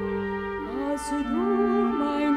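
Orchestral accompaniment of a Yiddish lullaby between sung phrases: a held chord fades and a new, slow melodic line enters in the low-middle range about halfway through.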